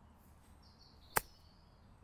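A golf club striking the ball once on a short chip shot off the grass: a single sharp click about a second in.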